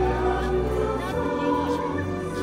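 A choir singing a hymn with instrumental accompaniment, in steady sustained chords; the bass notes shift to a new chord about halfway through.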